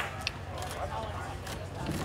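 Faint background voices of people chatting, with a low steady rumble and a few light clicks.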